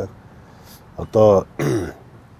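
A person's voice: a pause of about a second, then two short vocal sounds, the second falling in pitch.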